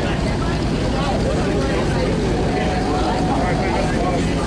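Indistinct voices of several people over a steady low rumble, the running engine of the boat they are aboard.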